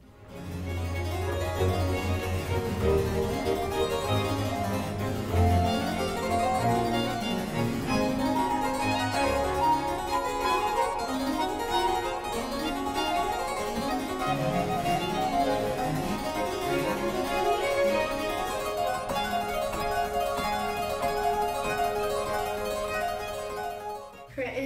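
Two-manual harpsichord played solo: a steady stream of quick plucked notes over a lower bass line.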